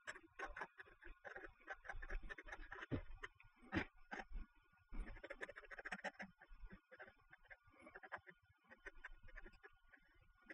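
Ink pen scratching across a lined paper notepad while writing and drawing: faint, irregular short strokes and ticks, busiest in the middle.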